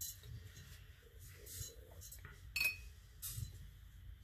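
Painting gear clinking: a few light taps, the loudest about two and a half seconds in with a short ring.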